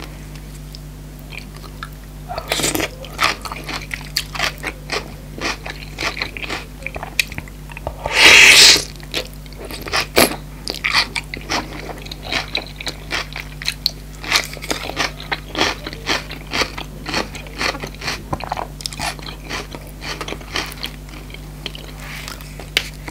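Close-miked eating: chewing with crunchy bites of fresh chopped-vegetable salsa, a dense run of short sharp clicks, and one louder, longer burst about eight seconds in.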